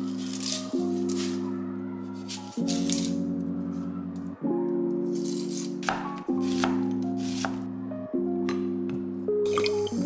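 Background music: held chords that change every one to two seconds, with scattered short rattling hits over them.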